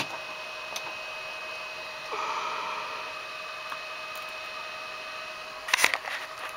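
Steady electrical hum and whine from battery-charging equipment, several unchanging tones over a low hiss, with a brief rush of hiss about two seconds in. Near the end, a short burst of knocks and rubbing as the camera is handled and swung round.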